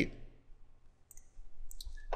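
A few faint, short clicks in near quiet, one about a second in and more near the end.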